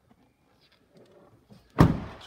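A Toyota Hilux door shut with one loud thud near the end, after a second of faint handling noises.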